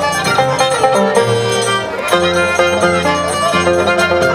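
Andean violin and harp music for the scissors dance (danza de tijeras), playing a lively, continuous melody.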